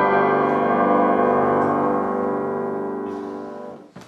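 A grand piano's chord, struck just before and left to ring, slowly dying away over several seconds and then cut off abruptly.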